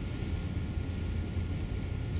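Steady low hum of room background noise, with a few faint light paper sounds as a sticker is handled and pressed onto the picture board.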